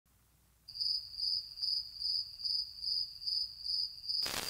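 Cricket chirping in a steady rhythm, a little over two high chirps a second, beginning just under a second in.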